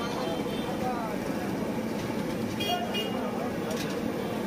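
Busy street ambience: indistinct voices over traffic noise, with a short vehicle horn toot about two and a half seconds in.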